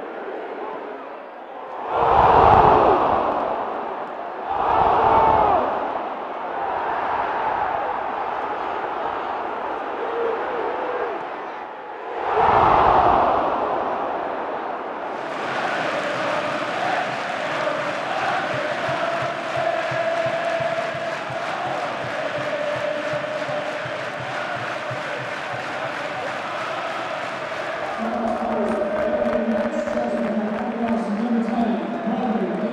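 Football stadium crowd roaring in three loud surges as the home side attacks, then the crowd singing together in long held notes.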